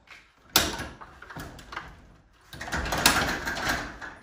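Metal hardware of a garage door opener's door arm and trolley being handled: a sharp knock about half a second in, then a longer stretch of sliding, rattling metal noise in the second half.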